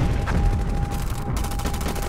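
Rapid machine-gun fire in a fast, even rattle of shots, opening with a heavy low thump, with a thin steady high tone held underneath.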